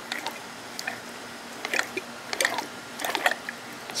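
Small metallic clicks and gritty scrapes in a scatter of about five short clusters as the bare Yamaha Zuma two-stroke engine is worked by hand. The top end feels rough and has likely been seized.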